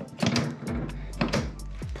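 Background music with a steady beat: regular drum hits over a low bass line.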